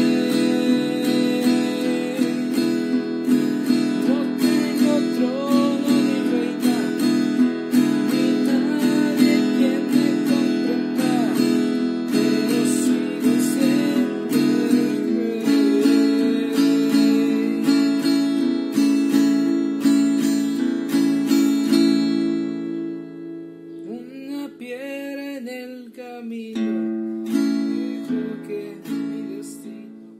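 Acoustic guitar strummed in a ranchera rhythm through the D, E7 and A chords of a chorus. The strumming is full and steady at first, then turns quieter and sparser about two-thirds of the way through, and fades out near the end.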